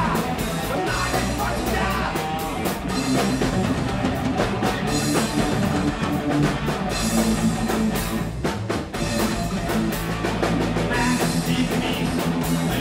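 Live rock band playing loudly: electric bass, electric guitar and drum kit, with steady drum hits throughout.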